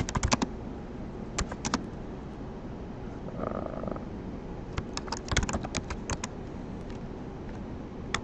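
Computer keyboard keystrokes, typing in short bursts: a quick run at the start, a few keys about a second and a half in, and a longer run around five to six seconds in.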